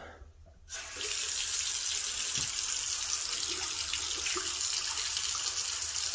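Bathroom sink faucet turned on about a second in, then a steady stream of water running from the spout into a porcelain sink basin.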